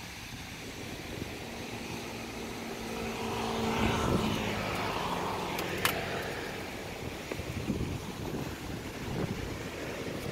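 A motor vehicle passing on the road, its engine hum and tyre noise swelling to a peak about four seconds in and then fading. There is a single sharp click near six seconds.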